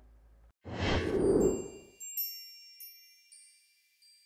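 Outro sound effect: a whoosh swells up, loudest about a second and a half in, then a cluster of high chime tones is struck a few times and rings out, fading away.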